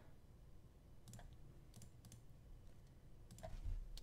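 A few faint, sharp clicks from computer controls during digital drawing: a pair about a second in, another pair just before two seconds, and one more later on.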